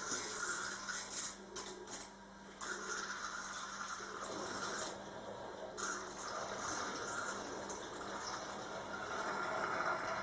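Water running from a single-lever kitchen faucet into a glass bowl: a steady splashing hiss that shifts in tone a few seconds in and again just past halfway.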